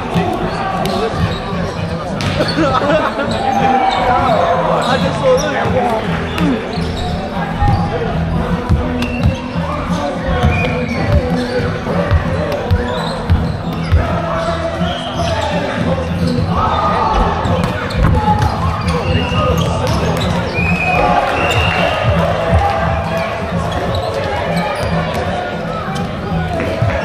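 Volleyballs being struck and bouncing on a hard indoor court, sharp irregular smacks scattered throughout, over indistinct shouts and chatter of players and spectators echoing in a large sports hall.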